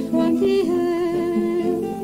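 A women's choir holding long notes in a slow sacred song, several voices sounding together, over acoustic guitar accompaniment.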